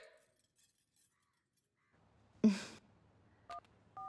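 Near silence, broken about two and a half seconds in by a short burst of noise, then a short two-tone phone keypad beep near the end.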